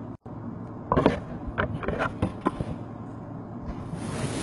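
A cardboard card box being handled: a few short taps and scrapes, then a longer rustle near the end.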